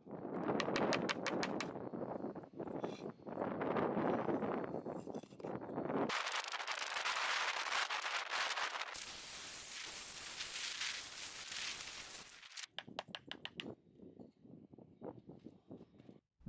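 A hammer knocking on a slab of red sandstone scored along a line, with gritty scraping of stone on grit, to snap off the scored edge strip. Sharp knocks run through rough grating noise, and a few separate taps come near the end.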